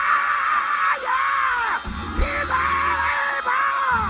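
A preacher's voice shouting long, high, strained held phrases over a church band, four stretches with short breaks. The band's bass and drums hit in the break about two seconds in.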